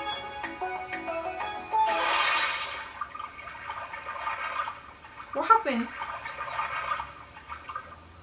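Soundtrack of a TV commercial playing back: light background music, with a burst of rushing noise lasting about a second, about two seconds in, and a short gliding vocal sound a little past the middle.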